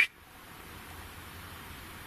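Faint steady background hiss with a low hum and no distinct sound. A man's wavering whistle cuts off right at the start.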